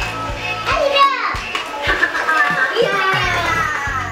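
Electronic music and high, childlike toy voice sounds from battery-powered dancing toys, a Teletubbies Laa Laa and a Minion Stuart, playing as they dance.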